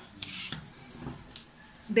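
Plastic drafting tools, a set square and a ruler, being slid and set down on paper, with a brief scrape about half a second in, then softer rubbing and light ticks.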